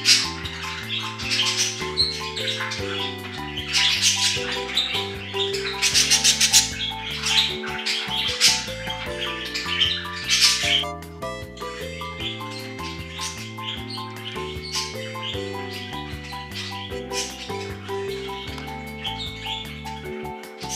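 Budgerigars chattering and chirping in quick high bursts over soft background music. The chirping is busiest and loudest in the first half, then thins to fainter scattered chirps.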